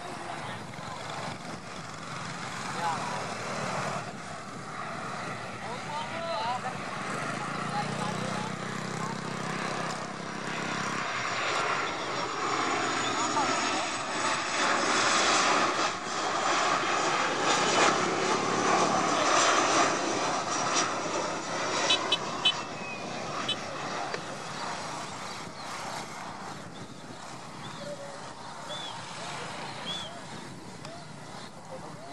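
Boeing 737-800 airliner on landing approach, its CFM56 jet engines passing overhead. The engine noise swells to a peak a little past halfway, then fades as the jet moves away.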